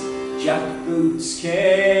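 Live folk song: piano accordion and acoustic guitar accompaniment, with a man's singing voice coming in about half a second in.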